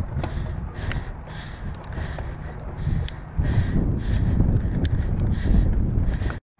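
Hardtail mountain bike riding up a dirt trail: a low rumble of wind on the handlebar-mounted microphone mixed with tyres rolling over dirt, with scattered small clicks and rattles from the bike. The rumble gets louder about halfway through.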